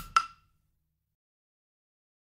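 The drum track of a classroom language chant: its last two percussion clicks, about a quarter second apart, then the track stops.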